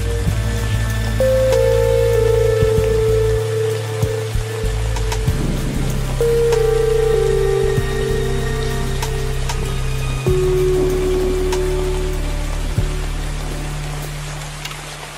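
Slow, calm music of long held notes, changing pitch every few seconds, over steady rainfall with scattered drop clicks.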